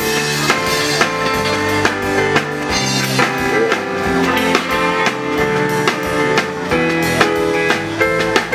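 Live band playing with a drum kit keeping a steady beat under bass and electric guitar.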